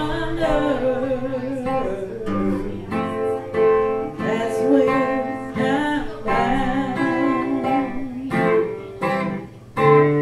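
A woman singing a slow song, accompanied by a strummed acoustic guitar.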